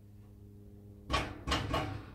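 Stainless steel pot and rubber spatula scraping and knocking against a Pyrex dish as mashed potatoes are tipped out: two short, loud scrapes a little after a second in, over a low hum.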